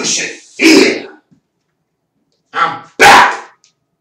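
A man imitating a dog's bark: two loud barks, a pause of about a second and a half, then two more.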